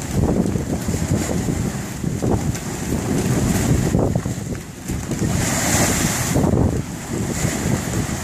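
Wind buffeting the microphone over water rushing and splashing along the hull of a sailboat heeled under sail, with a louder hiss of spray about five and a half seconds in.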